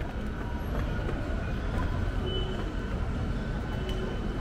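Steady low rumbling background noise, even throughout, with no distinct events.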